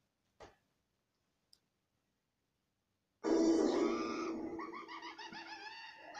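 A few faint clicks, then about three seconds in, TV audio starts abruptly and loud: a voice-like sound with repeated rising and falling glides over a steady held note, slowly fading.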